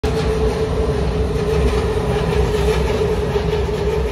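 Steady loud mechanical rumble and hiss with a constant mid-pitched hum running through it.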